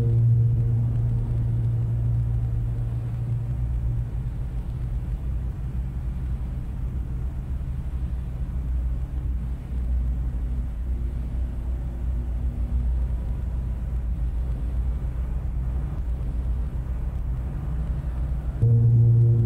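Piano playing deep bass notes held with the sustain pedal: a low chord struck just before rings on and slowly fades over the first few seconds, leaving a low, steady resonance.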